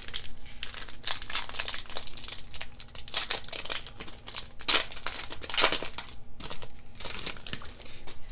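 Foil wrapper of a Pokémon card booster pack crinkling and tearing as it is opened by hand, in a run of irregular crackles. The loudest come about three, five and five and a half seconds in.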